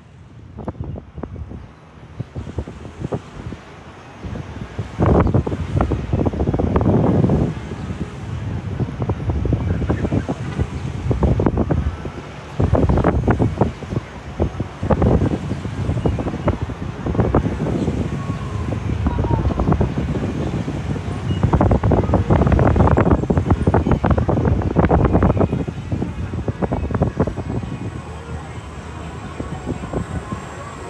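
Wind buffeting the microphone of a camera on a swinging Slingshot ride capsule, a low rumble that surges into loud rushes every few seconds as the capsule swings through the air, the longest a few seconds past the middle.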